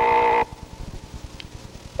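A steady, flat buzzing tone lasts about half a second at the start, like a door buzzer, followed by low hum and hiss from the worn tape.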